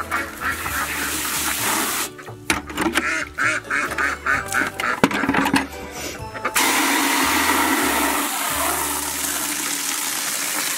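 Water from a brass hose nozzle spraying into a plastic bucket, a steady hiss that starts suddenly about two-thirds of the way in. Before it, a mix of short, uneven sounds.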